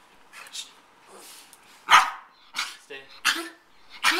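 A small dog gives a sharp, loud bark about two seconds in, excited while being held in a stay before its food.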